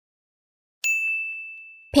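A single electronic ding sound effect, a high steady tone with bright overtones. It starts suddenly about a second in and fades away over about a second, cueing the next vocabulary word.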